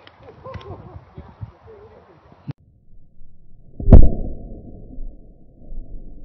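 An old firework going off inside a pumpkin: one loud bang about four seconds in, followed by a low, muffled rumble that slowly dies away. Faint voices and laughter come before it.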